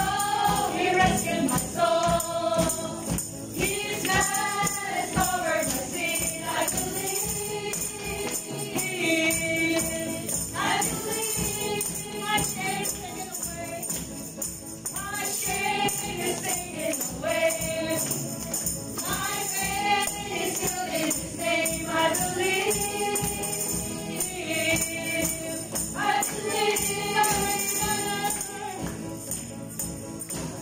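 Praise and worship song sung by women's voices in phrases of a few seconds, with handheld tambourines jingling along throughout.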